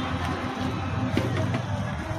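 Busy street noise with music playing in the background, and a couple of light clicks about a second in.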